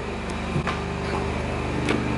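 A steady low mechanical drone with a few evenly spaced low tones, and a couple of soft knocks from footsteps on carpet.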